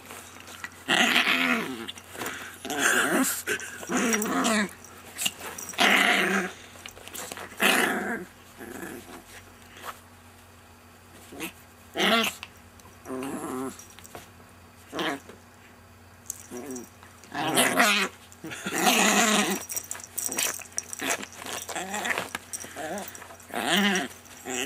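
Chihuahua growling in short, rasping bouts, about a dozen of them with brief pauses between, while mouthing a person's hands: play-growling during friendly roughhousing, not aggression.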